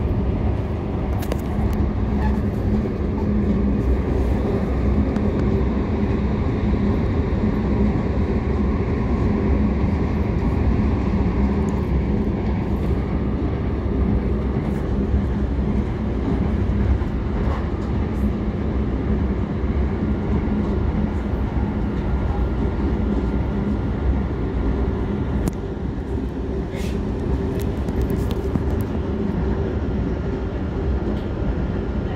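Steady low rumble and hum of a moving vehicle, with a few faint clicks.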